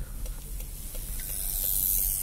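Inside a slowly rolling car: a steady low rumble with a hiss that swells near the end as the car creeps forward on the road.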